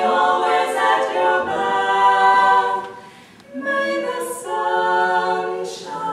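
Women's barbershop quartet singing a cappella in close four-part harmony, holding sustained chords. The singing breaks off briefly about halfway through, then the next phrase comes in.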